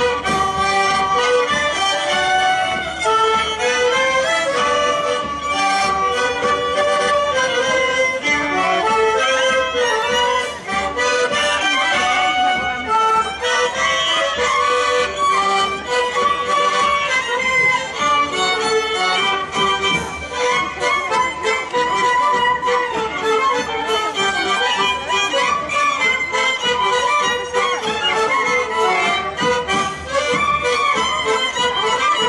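Polish folk band playing a lively polka on fiddle, clarinet, trumpet, accordion and bass drum, with a steady beat.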